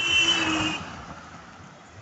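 A road vehicle going by, loudest in the first second and then fading, with a steady high-pitched tone over the start.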